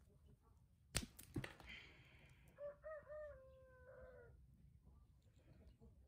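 Two sharp cracks about a second in as a piece of dried mud wasp nest is broken by hand, followed by a rooster crowing once for about a second and a half, fainter than the cracks.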